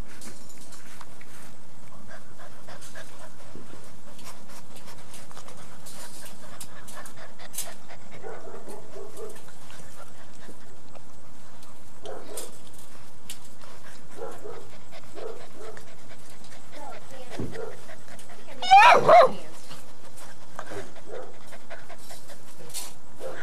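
Young puppies making small short whimpers and yips, with two loud yelps close together about three seconds before the end.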